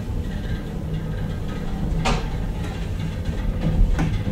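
Traction elevator car travelling in its shaft: a steady low rumble, with a sharp click about two seconds in.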